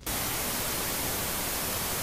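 Loud, steady static hiss like an untuned television's white noise, cutting in suddenly at the start, as a video-glitch sound effect.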